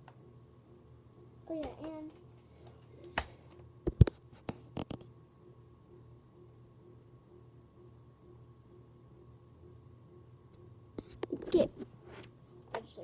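Handling noise from a plastic Nerf blaster brought up close to the microphone: a few sharp clicks and knocks about three to five seconds in, the loudest a single thump about four seconds in, then quiet, with more short knocks near the end.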